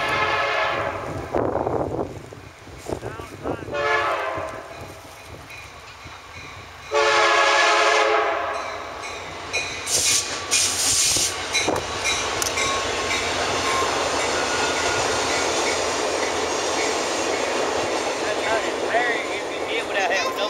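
Amtrak passenger train led by an EMD F40PH diesel locomotive sounding its air horn in three long blasts, the loudest about seven seconds in. The train then rolls past with steady rumbling and wheels clacking over the rail joints.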